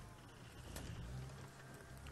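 Open safari vehicle's engine running low at idle, a quiet steady rumble that grows a little louder about halfway through.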